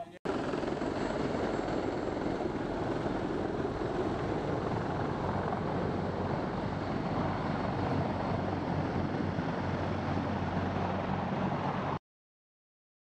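CH-53E Super Stallion heavy-lift helicopter flying low past, its rotor and turbine noise loud and steady, starting abruptly a moment in.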